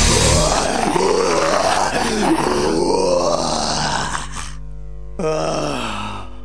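Closing seconds of a lo-fi raw black metal demo track: the full band drops out about half a second in, leaving grunting, groaning vocals that slide up and down in pitch. About four seconds in these give way to a held, steady pitched tone that slides down in pitch about a second later and fades.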